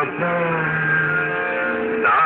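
Music with a man chanting, holding long steady notes.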